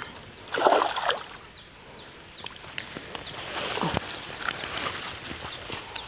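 A hooked snakehead thrashing at the water surface as it is reeled in: a loud splash about a second in, then quieter splashing and a knock near four seconds.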